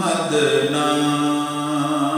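A man singing an Urdu naat, a devotional poem in praise of the Prophet Muhammad, in a slow melody with long held notes.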